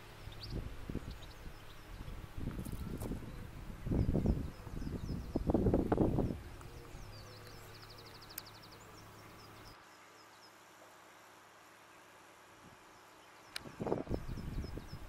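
Outdoor parkland ambience: small birds chirping, with a short fast trill about eight seconds in. Under it come irregular low rumbling bursts, loudest around four to six seconds in. From about ten seconds in it is much quieter.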